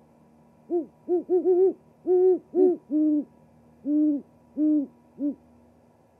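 Great horned owl hooting: a run of about ten deep hoots, the first few short and close together, the later ones longer and more spaced out.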